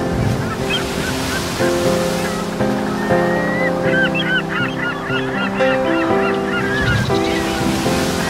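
Background music of sustained, slowly changing notes over a steady wash like surf, with a flurry of overlapping bird calls from about three to seven seconds in.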